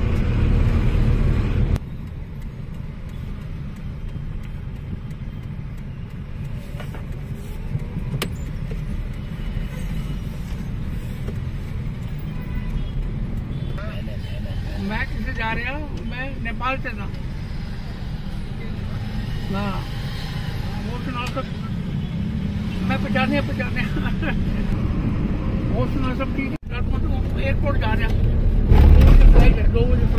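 Steady low rumble of a car driving, heard from inside the cabin, with indistinct voices at times in the background.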